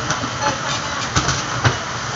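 Steady low hum and clatter of a busy shop, with a few sharp knocks as goods are packed into a cardboard box at the counter; the loudest two knocks come close together past the middle.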